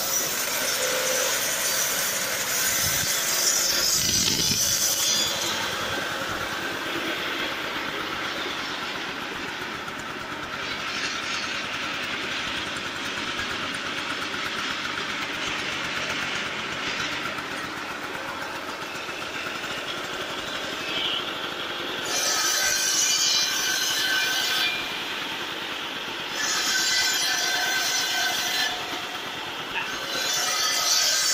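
Homemade saw driven by a scooter engine, running steadily with a high ringing whine from the blade. Twice near the end it gets louder and harsher as the blade cuts wood.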